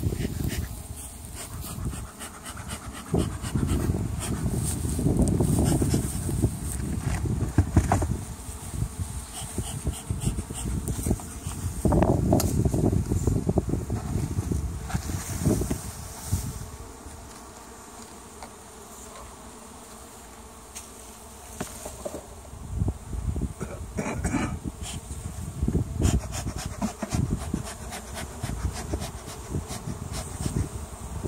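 Honeybees buzzing at an opened beehive, over irregular low rumbling surges and a few knocks as the hive's wooden covers are lifted off.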